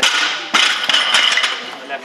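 Small audience clapping and cheering after a snatch lift. It is loudest from about half a second in and dies away before the end.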